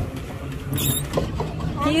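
Wind buffeting the microphone on an open pedal boat on a lake, a steady low rumble, with a brief high squeak a little under a second in.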